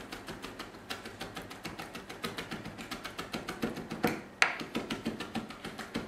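Chef's knife rapidly mincing a chipotle pepper on a plastic cutting board: a quick, even run of knife taps, with a couple of louder knocks about four seconds in.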